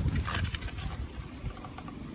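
A PVC pipe and fitting freshly coated with solvent cement being pushed together by gloved hands: a knock, then a short scraping rustle of plastic on plastic in the first second, over a low background rumble.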